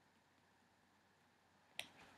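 Near silence: faint room tone, with one short click near the end.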